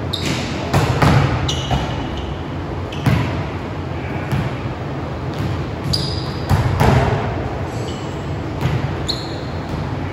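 Volleyballs being set and spiked, several sharp slaps and bounces of the ball on a hardwood gym floor, with a few short high sneaker squeaks between them.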